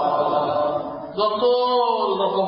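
A congregation of men chanting 'Amin' together in response to an Arabic supplication. Just past a second in, a single man's drawn-out, sung voice rises above the crowd.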